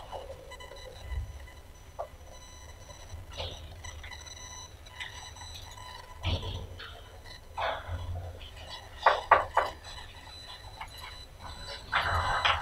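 Room tone with scattered paper rustling and small clicks and knocks from people handling printed sheets at a table, with a cluster of sharper knocks about three-quarters of the way through.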